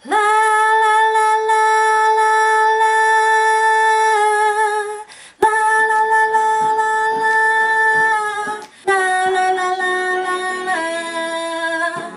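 A woman singing an a cappella vocal part, unaccompanied: two long held notes at the same pitch, each about four and three seconds, then a lower phrase that steps down in pitch near the end.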